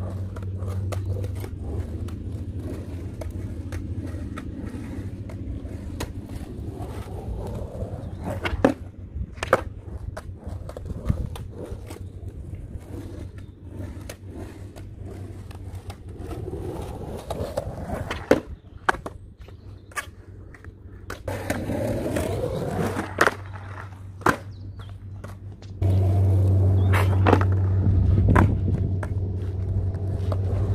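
Skateboard wheels rolling on concrete, a steady low rumble that is loudest near the start and again for the last few seconds as the board passes close. Scattered sharp clacks of the board hitting the concrete break in through the middle.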